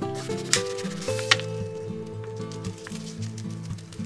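Background music: a melody of held notes over a low bass line, with two brief clicks about half a second and a second and a third in.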